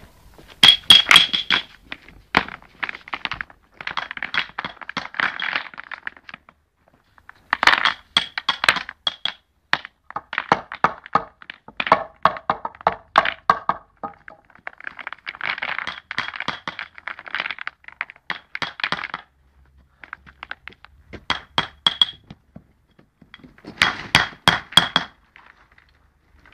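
Clinks and knocks of river pebbles being handled from a pile and set into a paving bed, with a hammer tapping the stones down. They come in bursts of quick clicks, some ringing sharply, with short pauses between.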